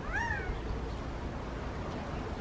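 Male Gambel's quail giving a single short call just after the start, one note that rises and then falls in pitch.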